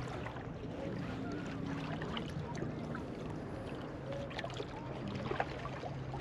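Small waves lapping and trickling against the shoreline rocks, with scattered small splashes. Under it runs a low steady hum that weakens through the middle and comes back about four seconds in.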